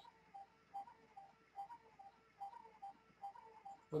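Faint, short high chirps repeating about two to three times a second, alternating between two pitches, over a low steady hum.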